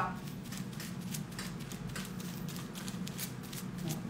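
Hair-colour brush stroking dye onto a section of hair laid on foil: a run of short, soft scratchy strokes, a few a second.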